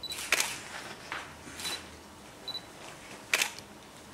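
Camera shutters clicking about five times, the loudest just after the start and about three seconds in, with a few short high beeps among them.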